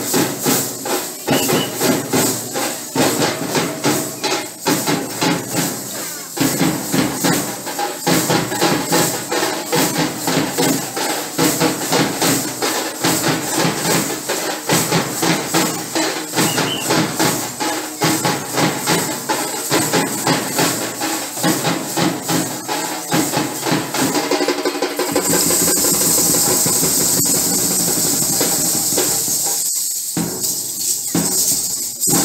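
Processional folk music: lezim jingle sticks, their metal discs clashing in a fast steady beat, over drumming. About 25 seconds in the beat gives way to a continuous high shimmering jingle.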